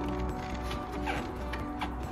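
Background music with steady held tones. Over it, two short faint rubbing sounds, about a second in and near the end, as a hand works the foam plug out of the subwoofer's front bass port.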